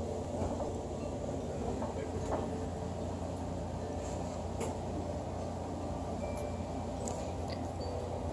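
Steady low hum of room background noise, with a few faint clicks.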